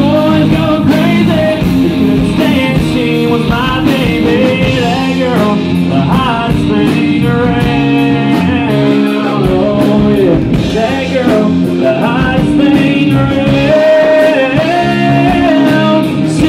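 Live country-rock band playing, with acoustic and electric guitars, bass, drums and keyboard.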